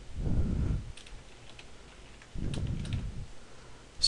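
Computer keyboard typing: keystrokes in two short runs as a line of code is entered.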